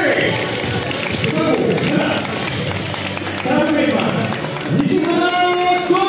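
Voices calling out in long, drawn-out notes over steady crowd noise: held calls at the start and again near the end, with shorter rising-and-falling calls between.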